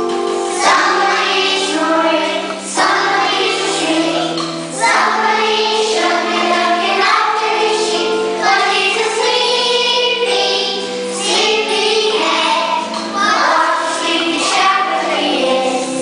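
Young children singing a song together to a keyboard accompaniment with a steady beat of about one accent a second.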